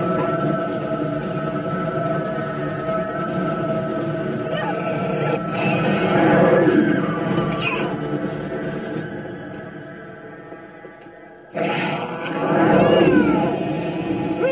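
Horror-film soundtrack: a droning score under wailing, animal-like cries and screams that rise and fall in pitch. The sound fades down, then cuts back in suddenly and loud a little after the middle.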